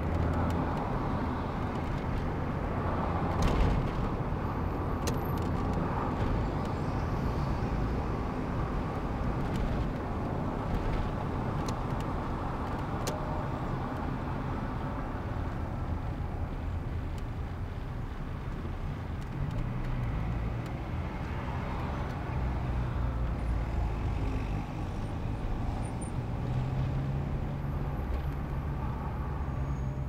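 A car driving in city traffic: steady low engine and road noise, with the pitch of the engine shifting as speed changes and a few short sharp ticks in the first half.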